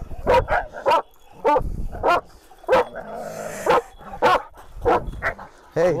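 A leashed Kangal dog lunging and barking again and again in short, sharp barks at irregular intervals. It is worked up at the wolves in front of it.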